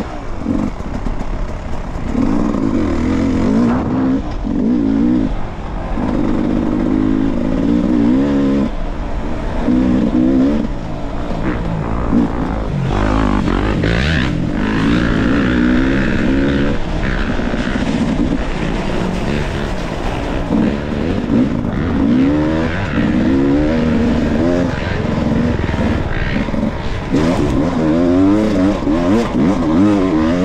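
Off-road dirt bike engine on the rider's own bike, revving up and down again and again as the throttle is worked over rough trail and up a dirt climb.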